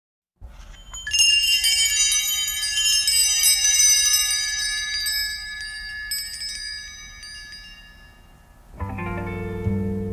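High metallic chimes tinkling in a cluster of struck ringing notes that slowly die away, as the intro of an exotica music track. Just before the end, lower-pitched instrumental music comes in.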